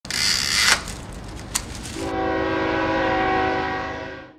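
Intro sound effect of a train: a loud rushing burst with a sharp click, then a multi-tone train horn held for about two seconds, fading away at the end.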